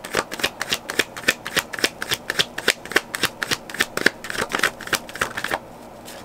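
Tarot deck being shuffled by hand: a quick, dense patter of cards clicking against each other that stops about five and a half seconds in.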